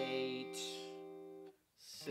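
Electric guitar strumming a single ninth chord and letting it ring out for about a second and a half, then muting it suddenly.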